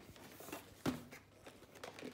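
A cardboard toy-kit box being handled and turned over on a wooden table: a few light knocks and rubs of cardboard, the sharpest a knock a little under a second in.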